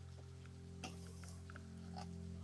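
Quiet handling sounds: a few faint clicks of plastic floodlight-camera parts and wires being fitted together, over a low steady hum.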